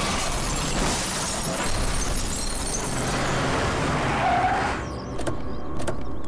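A car crashing: a loud noisy crash with glass shattering that carries on for about five seconds and then eases off. A couple of sharp knocks follow near the end.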